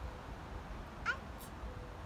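A toddler's short, high squeal about a second in, rising then falling in pitch, over a low rumble of wind on the microphone.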